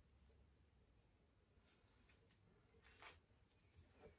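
Near silence, with a few faint, brief rustles of string and dried grass stems being wound and handled as a bundle is bound to a stick.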